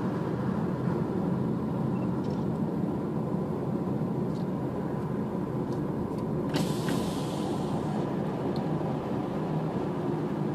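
Car driving along a highway, with steady road and engine noise heard inside the cabin. A brief click or rattle sounds about six and a half seconds in.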